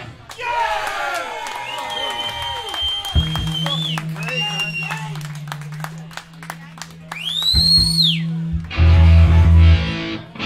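A loud punk band's song cuts off, leaving a live club between songs: shouting, scattered clicks and guitar handling noise, and a low guitar note held through the middle. A high whistle rises and falls a couple of seconds before the end, then the band crashes in with a short, loud full-band hit.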